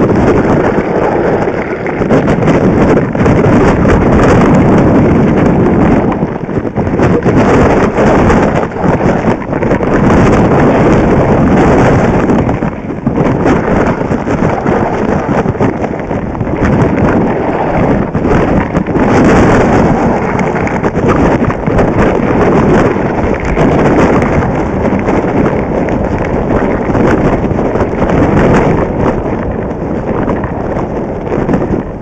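Wind buffeting a camera's microphone during a fast downhill ski run, with skis scraping and chattering over packed snow; the loud rumble surges and dips throughout, with many short crackles.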